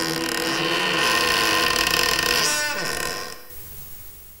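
Harsh, dense sustained horror-film sound-design drone that ends about three seconds in with a falling pitch sweep, then drops away to a faint hiss.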